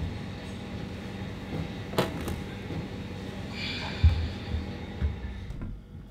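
A plastic tub being handled and set into a freezer: a sharp knock about two seconds in, then a heavy low thud about four seconds in and a softer thump a second later, over a steady low hum.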